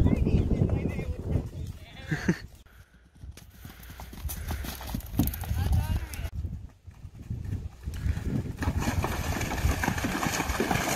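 A cantering horse's hoofbeats on grass, with wind rumbling on the microphone and brief bits of voice. About eight and a half seconds in, a dense, steady splashing sets in as the horse goes through water.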